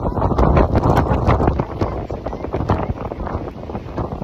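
Strong hurricane wind buffeting the phone's microphone in loud, gusting rumbles, strongest about a second in.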